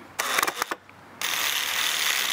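A few clicks and rattles as a Gator Grip universal socket is fitted onto a large screw eye, then about a second in a cordless drill starts running steadily, turning the socket to drive the screw eye into wood.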